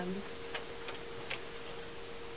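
Three light clicks of dry-erase markers being handled at a whiteboard tray, over a steady faint hum.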